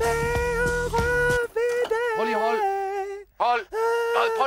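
A man sings into a studio microphone over a backing of bass and drums. About a second and a half in, the backing cuts out and he carries on alone in long, wavering held notes.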